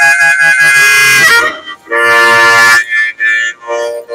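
Harmonica played solo, cupped in the hands: a long held chord that bends down in pitch just over a second in, then a second sustained chord, then a few short notes near the end.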